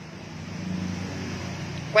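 An engine running with a steady low hum, growing louder over the first second and then holding.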